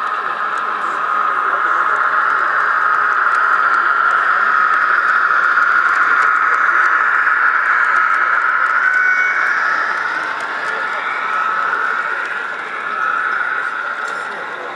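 Model passenger train running along the layout track, a steady running sound from its motor and wheels on the rails that grows louder over the first few seconds as it passes close and fades after about ten seconds. Crowd chatter of an exhibition hall behind it.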